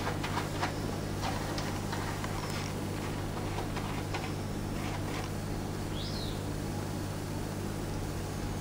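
Quiet room tone: a steady low hum with a few faint clicks and one brief, faint high squeak about six seconds in.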